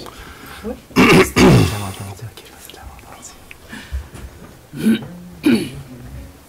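A person clearing their throat loudly about a second in, then two shorter throaty vocal sounds near the end.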